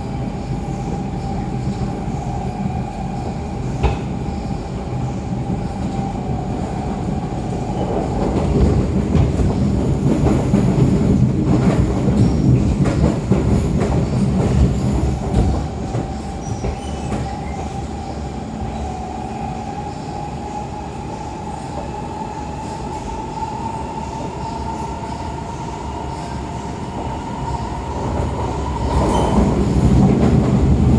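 Siemens C651 metro train with GTO-VVVF inverter drive running along the line, heard from inside the car: a continuous wheel-and-track rumble that grows louder for several seconds after about 8 s in and again near the end. A whine runs over it early on, fades, then returns about halfway and rises slowly in pitch before cutting off near the end.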